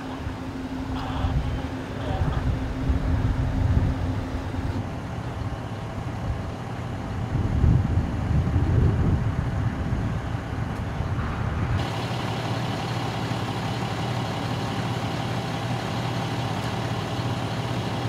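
Emergency vehicles idling at the roadside: uneven low rumble and traffic noise at first, then, from about twelve seconds in, a fire engine's diesel engine idling steadily with a low hum.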